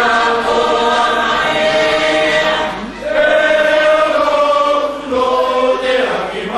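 A youth group singing a Cook Islands song together in chorus, holding long notes, with a brief break about three seconds in and a short dip again near five seconds.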